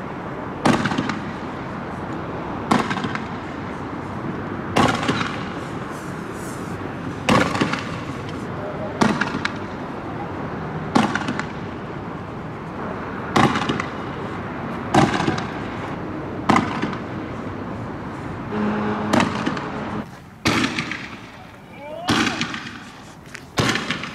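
Fireworks going off in a regular series of sharp bangs, about one every two seconds, each trailing off briefly as it echoes.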